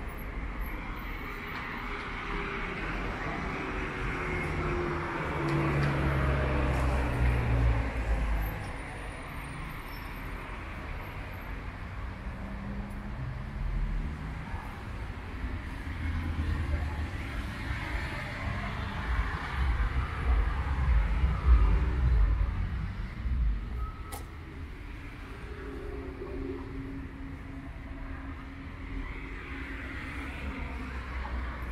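Street traffic: cars driving past on the road, a steady low rumble that swells twice as vehicles go by, loudest about six to eight seconds in and again around twenty to twenty-two seconds in.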